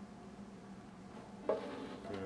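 Quiet room tone with a faint steady hum. About a second and a half in, a man's voice starts speaking.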